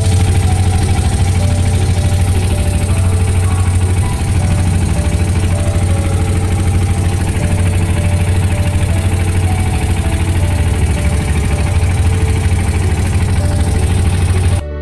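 A small wooden motorboat's engine running steadily, heard from on board, with a strong low hum.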